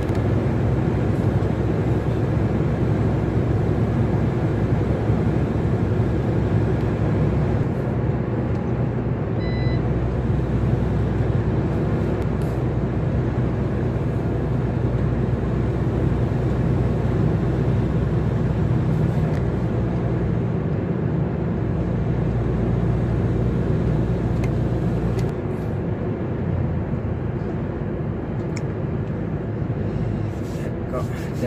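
Truck engine and road noise heard from inside the cab at steady motorway speed: a continuous low drone. About 25 seconds in the drone drops a little in pitch and loudness as the truck eases off.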